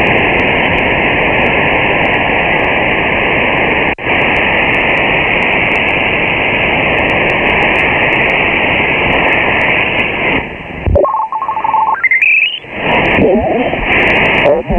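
Kenwood TS-590 HF transceiver receiving in lower sideband while it is tuned across the 40 m band: a loud, steady rush of band noise, with a brief dropout about four seconds in. Near the end the noise falls away, and a steady whistle and a quick rising chirp of heterodyne tones come through as the dial passes signals, before the noise returns.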